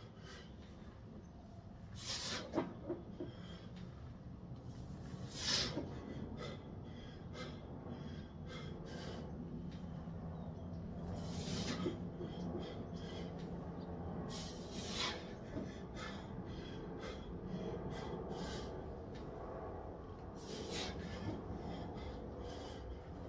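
A man breathing hard under a loaded barbell between back squat reps, with about five loud, sharp breaths a few seconds apart and quieter breathing in between.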